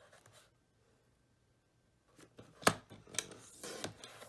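Fiskars sliding paper trimmer cutting a sheet of patterned paper. The first half is nearly quiet; then a few clicks and one sharp click as the blade carriage is pressed down, followed by the blade scraping along the rail through the paper.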